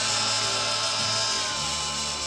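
Live orchestral accompaniment to a 1960s Italian pop ballad: sustained held chords over a bass line that moves to a new note near the end.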